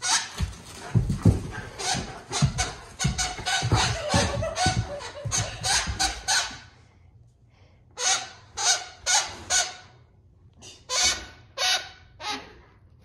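A greyhound biting down on a plush squeaky toy over and over, making it squeak in quick runs: a long run of rapid squeaks over the first six seconds, then four more, then a few near the end. Dull low thumps sound under the first run.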